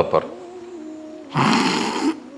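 A man crying mid-sermon: a faint, thin, held whimper, then a loud sharp noisy breath near the end as his voice breaks.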